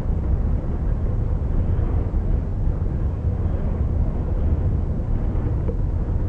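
Low, steady rumble of a container ship under way, heard from inside its bridge, with a faint steady hum above it.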